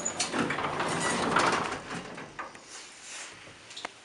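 Elevator car doors sliding shut: a rattling, noisy slide with scattered clicks, loudest in the first two seconds and then dying away.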